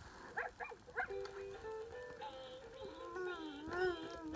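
Electronic musical toy playing a simple synthesized tune in steady held notes, opening with a few short swooping sounds in the first second.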